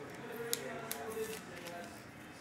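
Trading cards and their plastic holders being handled on a desk: a few sharp plastic clicks, the loudest about half a second in, with light rustling.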